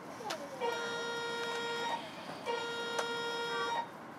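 Train horn sounding two long, steady blasts of about a second and a quarter each, a little over half a second apart.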